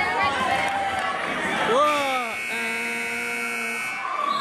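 Basketball gym scoreboard horn sounding the end of the game: one steady buzz starting about two seconds in, lasting under two seconds and cutting off suddenly. Players and onlookers shout just before it.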